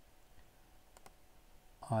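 Two faint computer mouse clicks, a little over half a second apart, placing the points of a wire in a schematic editor, over quiet room tone.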